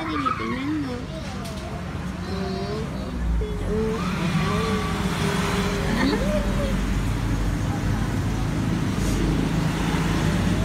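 A low motor-vehicle rumble that swells about three seconds in and stays, over a steady hum. Soft, wavering vocal sounds rise and fall on top of it now and then.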